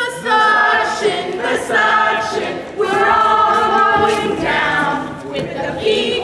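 A group of voices singing together without instruments, in long held notes broken by short pauses.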